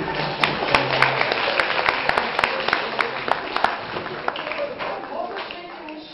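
Audience applause with many sharp claps and crowd voices in a hall. The tail of a music track stops about a second in, and the clapping thins out after about four seconds.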